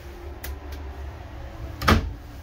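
Wooden vanity cabinet doors being handled: two light clicks about half a second in, then a louder knock near the end as a door is pushed shut.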